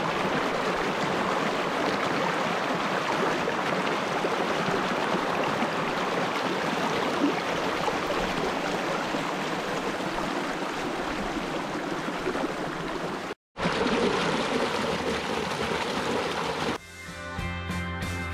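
Shallow mountain creek rushing and splashing over rocks in a steady flow, which breaks off for an instant about thirteen seconds in. Music with a beat comes in near the end.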